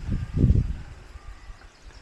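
Phone handling noise: a brief low rumble about half a second in as a thumb presses on the phone, then faint outdoor background.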